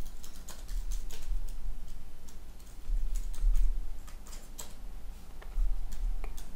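Irregular clicking of a computer keyboard and mouse, a few sharp clicks a second, over a low rumble that swells and fades.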